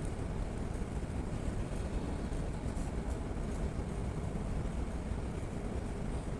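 Steady low rumble of background room noise in a hall, with no other distinct sound.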